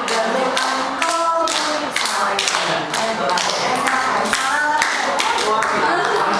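Hands clapping a steady beat, about two claps a second, under voices singing.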